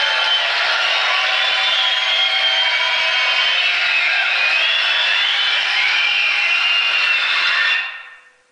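The speaker of a 1936 Philco 37-640X tube radio console gives out a steady hiss of static, with faint whistles that wander up and down in pitch, as when the set is tuned off a station. The sound dies away near the end.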